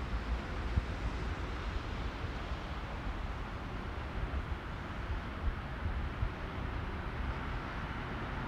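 Steady city ambience: an even hum of traffic heard from above the city, with a low, uneven rumble of wind on the microphone.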